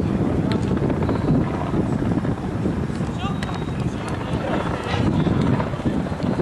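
Football players shouting and calling to each other during play, over a steady low rumble, with a few sharp knocks of the ball being kicked.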